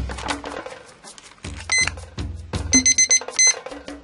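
Tanita digital kitchen timer beeping in quick high-pitched bursts, a short one near the two-second mark and a longer run of beeps about a second later, signalling that the instant ramen's four-minute wait is up. Knocks and rustling from handling the cup come around the beeps.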